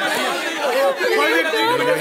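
Several people talking at once in an overlapping chatter of voices.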